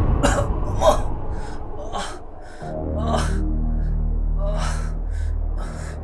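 A man panting in short, harsh gasps, about two a second. A low sustained music drone comes in about halfway through.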